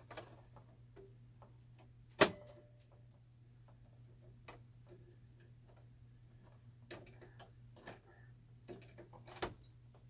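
Scattered small clicks and taps from handling a sewing machine while changing its thread, with one sharp click about two seconds in and a few more near the end.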